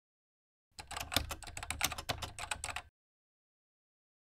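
Computer keyboard typing: a rapid run of keystroke clicks, starting just under a second in and lasting about two seconds.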